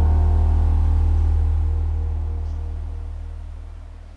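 The song's final chord, strummed on acoustic guitar with a deep low note underneath, ringing out and fading away.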